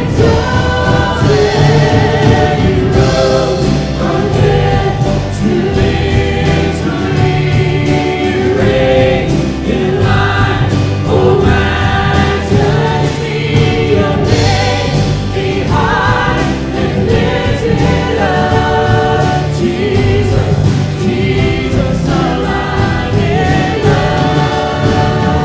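Live worship band and choir singing a contemporary Christian song, with massed voices over acoustic guitar, electric guitar and keyboard.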